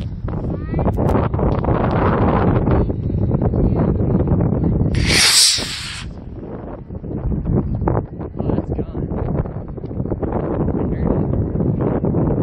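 Wind buffeting the microphone: a steady, loud, low rumble with no clear tone. About five seconds in there is a brief, bright, hissing rustle lasting about a second.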